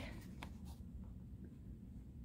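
Faint handling of a paper pop-up card: light rustles and a couple of soft clicks of cardstock under the fingers, over low room hum.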